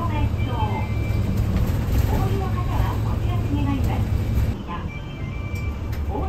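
Low, steady rumble of a city bus's engine heard from inside the cabin as the bus drives, easing off about four and a half seconds in. A voice speaks over it.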